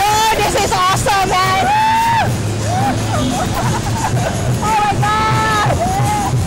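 Two women screaming and laughing on a reverse bungy ride: long, high screams in the first two seconds and again near the end, with shorter shrieks and laughter between.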